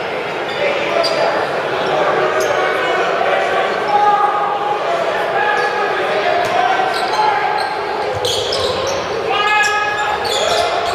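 Basketball game sound in a large echoing gymnasium: crowd and players' voices with a basketball bouncing on the hardwood floor. A short, loud shouted call stands out about nine and a half seconds in.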